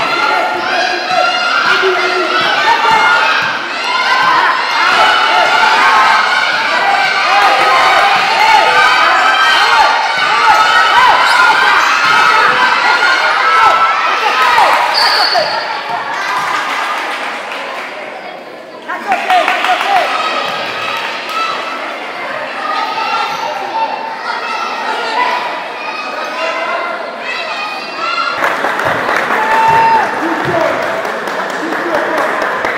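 Live courtside sound of an indoor basketball game: many voices from the crowd and players shouting and cheering over one another, with a basketball bouncing on the hardwood. The noise eases briefly a little past halfway, then picks up again.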